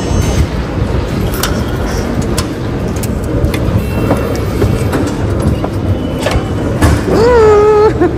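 Metro ticket turnstile clicking and clacking as people pass through it, over a steady low rumble of an underground station. A short held vocal sound comes near the end.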